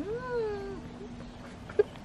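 A cat meowing once: a single drawn-out call that rises and then falls in pitch, under a second long, with a faint steady hum beneath it.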